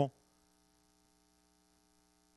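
Near silence with a faint, steady electrical hum made of several steady tones.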